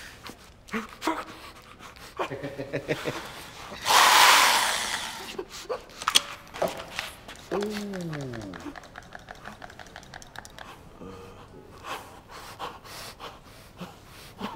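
A man panting and gasping in fear, with scattered small clicks. A loud burst of noise about four seconds in lasts about a second, and a falling moan comes a little past halfway.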